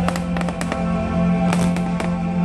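Fireworks popping and crackling in a quick irregular string of sharp reports over music with long held notes.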